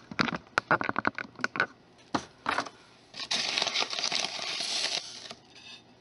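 A run of small clicks and knocks, then about two seconds of steady hissing as fine sand is scooped and poured with a spoon into a terracotta garden dish.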